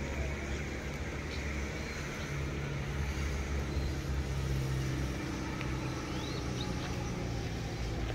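Car engine idling steadily with a low hum. A few short bird chirps come in about six and a half seconds in.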